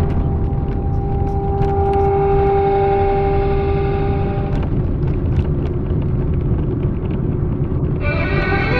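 Steady low rumble of a moving car heard from inside the cabin, its tyres running over a paving-stone street, with scattered small clicks. A held tone at two pitches sits over the rumble from about a second in until about four and a half seconds in.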